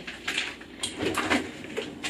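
Freezer door of a side-by-side fridge-freezer being opened, with a handful of light knocks and clicks as frozen packages are handled.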